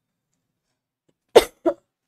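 A woman coughs twice, well past the middle: one sharp, loud cough, then a smaller one right after it.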